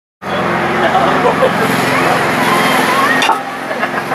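A steady low engine-like hum under indistinct voices of people talking in the background, starting after a moment of silence; a click a little over three seconds in.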